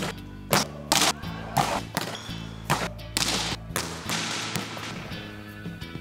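A volleyball being spiked: several sharp smacks of hand on ball and ball on the court, spread over the few seconds, over background music.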